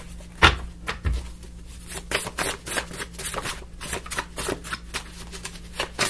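A stack of cards being shuffled by hand. There are a couple of soft thumps in the first second or so, then a run of quick card clicks and flicks.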